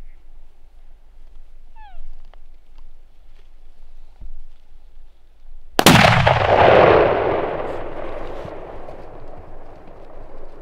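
A single muzzleloader rifle shot fired at a bull elk about six seconds in, a sharp boom followed by a long rolling echo that fades over several seconds.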